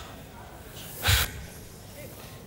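A man's short, forceful breath, close into a handheld microphone held at his mouth, once about a second in.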